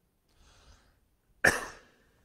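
A man coughs once, sharply, about a second and a half in, after a faint intake of breath.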